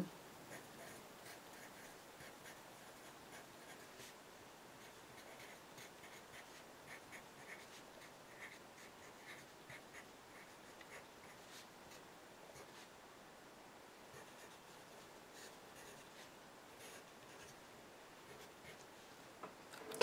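Pencil writing on paper: faint, short scratching strokes in quick runs, thinning out over the last several seconds.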